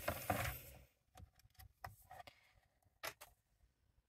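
Quiet handling of cardstock on a paper trimmer: a short scrape that fades within the first half-second, then a few faint taps and a sharper click about three seconds in.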